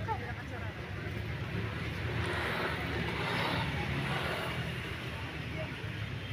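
Outdoor background with a steady low rumble and a motor vehicle passing, swelling and fading away around the middle, over faint voices of people nearby.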